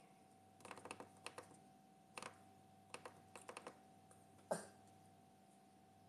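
Faint quick clicks and taps in short clusters, with a single soft knock about four and a half seconds in.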